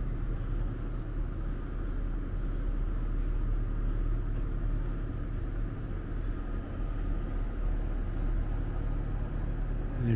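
Steady low rumble of background noise inside a large, echoing domed hall, even throughout with no distinct events.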